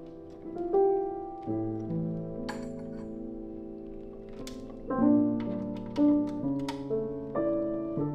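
A 150-year-old C. Bechstein grand piano played in slow, held chords that ring on and fade. A deep chord enters about a second and a half in, and new notes follow roughly once a second in the second half.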